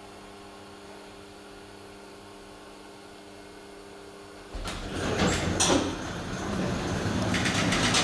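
Steady low hum inside a KONE hydraulic elevator car, then about halfway through a sudden loud rumbling clatter as the car's sliding doors open, with sharp rattles near the end.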